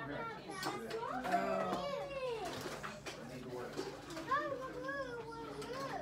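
A young girl's high voice making drawn-out, wordless sounds that rise and fall in pitch: one long arching sound about a second in, and a run of wavering ones near the end.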